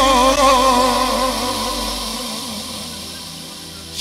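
Live manele music: a long, wavering held note with heavy vibrato over a steady bass drone. The bass cuts out a little past halfway, and the music dies away.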